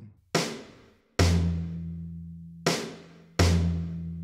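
Sampled acoustic drum kit played from a trigger pad: four snare hits, each fading out. The second and fourth set off a low tom that rings on under them, an unwanted tom trigger from crosstalk with no crosstalk cancellation applied.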